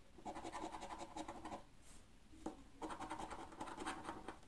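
A coin scratching the coating off a paper scratch card in quick back-and-forth strokes, in two spells: one for about a second and a half, then another starting just under three seconds in.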